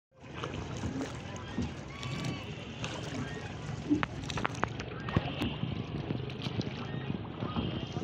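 Water lapping against a small rowboat out on a lake, with scattered sharp knocks and clicks, and people's voices in the background.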